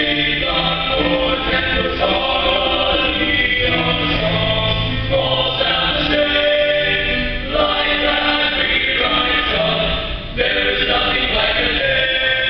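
Small unaccompanied male vocal ensemble of six singers singing in close chordal harmony, the chords held a second or two each and changing together over a low bass line, with a short break about ten seconds in.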